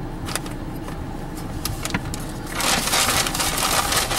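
Paper shopping bag rustling and crinkling as it is handled, starting about two and a half seconds in, over the steady low hum of a car interior. A few light clicks come before it.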